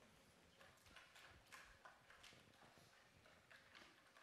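Near silence: faint room tone with scattered soft clicks and taps.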